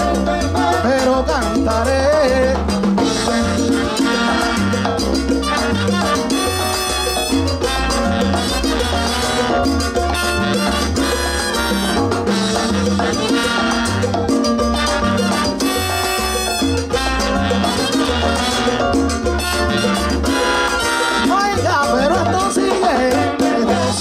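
Live salsa band playing a passage without lead vocals: a pulsing bass line under timbales, congas and keyboard, with bright sustained instrumental lines coming in several times.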